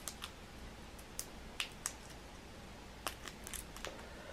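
Faint, scattered small clicks and crackles of fingers peeling the shell off a cooked shrimp, with a quick run of them near the end.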